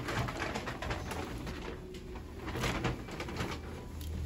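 Clothes on hangers being pushed along a shop rail: fabric rustling and hangers scraping, in bursts through the first second and a half and again near three seconds.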